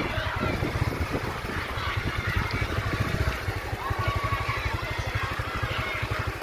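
A motor-vehicle engine idling, a rapid, even low throb that runs steadily throughout, with faint voices behind it.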